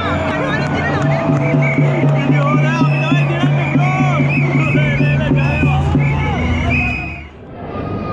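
Papare band music in a stadium crowd: low horns holding notes over a fast, steady drumbeat, with high notes and fans chanting and shouting over it. It cuts off abruptly about seven seconds in.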